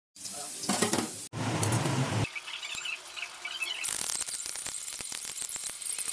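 Food sizzling as it fries in hot oil in a steel wok, in short spliced clips. From about four seconds in, a kitchen knife chopping carrots on a cutting board, with quick repeated taps.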